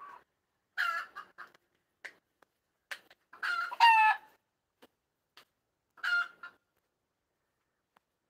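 Chicken calls: a short call about a second in, a longer, louder one around three and a half to four seconds in, and another short call about six seconds in.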